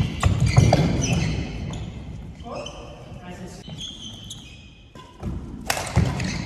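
Court shoes squeaking on a wooden floor, racket hits on the shuttlecock and footfalls during a badminton doubles rally. It goes quieter in the middle, then a sharp hit comes near the end.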